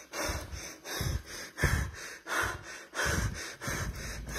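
A man's heavy, rapid breathing close to the phone's microphone, about six breaths, each with a rush of air on the mic.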